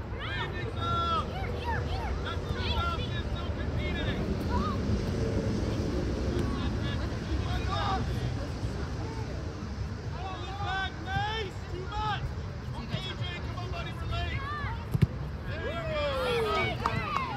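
Players and spectators calling out across an outdoor soccer field, in scattered bursts, over steady wind rumble on the microphone. A single sharp knock stands out near the end.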